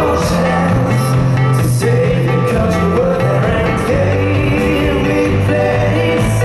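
A rock band playing live: a male voice singing over acoustic guitar, electric guitar and bass guitar, recorded from the audience.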